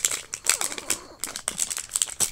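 The thin printed plastic wrapper of a Mini Brands toy capsule crinkling in the hands as it is pulled off the clear plastic ball, a quick run of irregular crackles.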